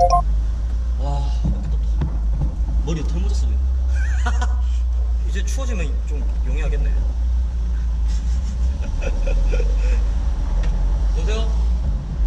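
Steady low rumble of a car's engine and road noise heard from inside the cabin while driving, with men talking over it.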